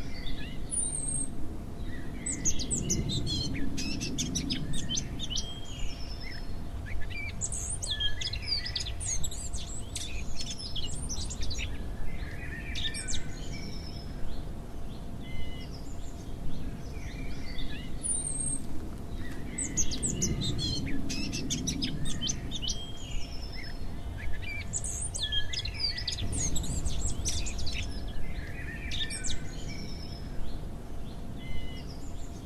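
Songbirds singing, with bursts of high chirps and trills every few seconds, over a low steady rumble and a faint steady hum.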